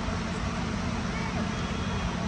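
Indistinct murmur of an outdoor crowd of spectators over a steady low rumble.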